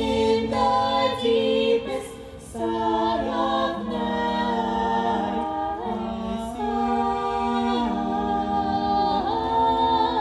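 Four singers, men and women, singing a cappella in close harmony, holding long chords that shift step by step, with a brief break about two seconds in.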